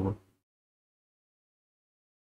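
A man's voice trails off in the first moment, then dead silence.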